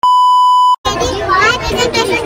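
Television colour-bar test tone: one steady, loud beep lasting just under a second that cuts off abruptly, used as an editing transition. Children start talking right after it.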